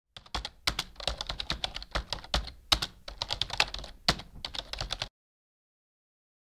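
Keyboard typing: rapid, irregular clicks of keys being struck, stopping abruptly about five seconds in.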